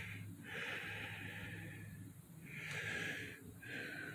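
A person breathing audibly close to the microphone: four soft, hissy breaths in and out, each lasting about a second.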